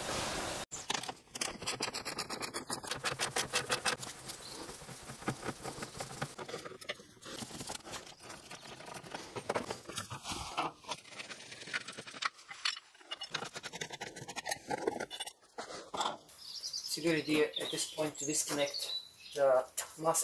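Quick clicks and light knocks from a hand tool undoing fasteners in a car's engine bay, some in fast runs.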